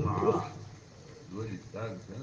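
A man's voice trailing off at the end of a phrase, then a short pause with a couple of brief, soft voiced sounds.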